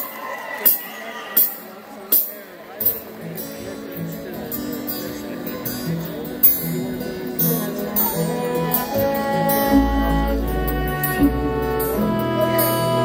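Live instrumental opening of a folk ballad played by acoustic guitars, upright bass and a symphony orchestra. A few sharp taps in the first couple of seconds lead into sustained instrument notes that build up, with a deep bass note entering near the end.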